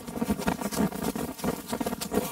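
Running footsteps on dry grass, quick and irregular.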